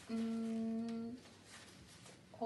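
A woman humming one steady, level note for about a second, which then stops abruptly.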